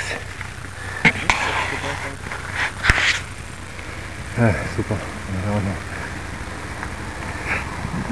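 Ride noise picked up by a bicycle-mounted action camera as the bike sets off: a few sharp clicks and knocks in the first three seconds over a steady low hum.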